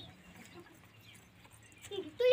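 A quiet lull of faint outdoor background noise, with speech trailing off at the very start and a voice just beginning near the end.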